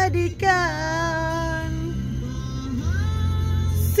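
A song with a woman singing: a long held note that sags slightly in pitch, then a short rising phrase, over a steady bass accompaniment.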